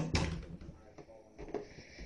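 A sudden thump at the start, followed by a brief creak and a few light knocks.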